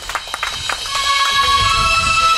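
Scattered audience clapping dying away as backing music comes in, its sustained tones building from about a second in.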